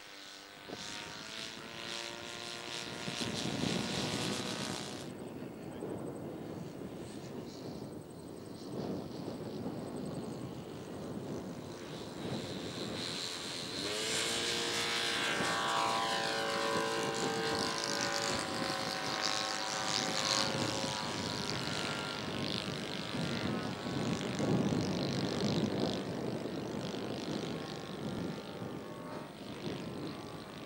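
Engines of radio-controlled model airplanes running in flight. The engine note bends in pitch as the planes pass, and grows louder from about halfway through.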